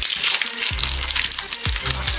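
Foil Pokémon TCG booster pack crinkling as it is torn open by hand, over background music with a steady bass line.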